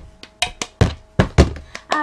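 Cup-song rhythm played on a plastic cup and a tabletop: hand claps, taps and the cup knocked down on the table, about eight sharp strikes in a quick repeating pattern.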